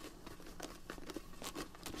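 Folded paper slips being shaken inside a lidded plastic box, an irregular rattle and rustle of paper against plastic.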